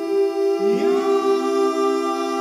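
Layered wordless a cappella vocal harmony holding sustained chords. About half a second in, one voice slides up into a higher note.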